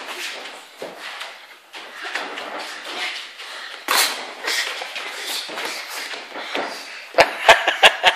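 Padded boxing gloves thudding on headguards and bodies, with shoes scuffing on the ring canvas, during children's sparring. There is a sharp knock about four seconds in and a quick run of hard knocks near the end.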